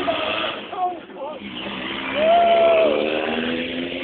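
A motor vehicle on the street, its engine note rising slowly as it pulls away, with men's voices and a drawn-out call over it about halfway through.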